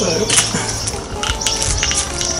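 Weber Smokey Mountain smoker's enamelled steel lid being picked up and handled, giving a few sharp metallic clinks and knocks.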